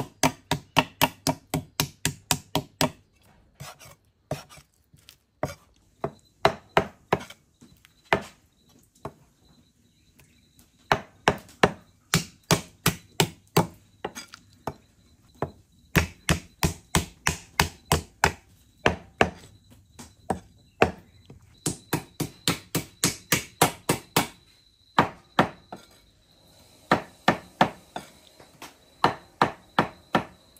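Cleaver blows on river mussel meat against a thick wooden chopping block, in fast runs of about four strikes a second with short pauses between runs. The meat is being pounded to tenderise it, since it is too tough to chew otherwise.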